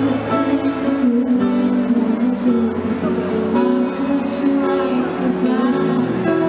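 Live concert music: a slow ballad played by a band with guitar and sustained chords, a woman singing over it.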